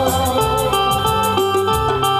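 Live band playing an instrumental break with no singing. A lead melody of steady held notes moves step by step over a drum kit's steady beat and a bass line.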